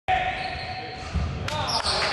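A basketball game on a hardwood gym floor: the ball bouncing, with players' voices calling out from about halfway in.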